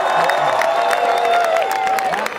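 Large crowd cheering and clapping, with long held shouts and whoops over the claps.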